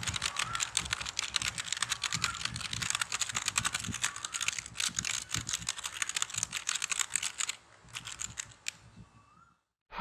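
Rapid computer keyboard typing, a dense run of key clicks that thins to a few scattered keystrokes near the end and stops about nine and a half seconds in.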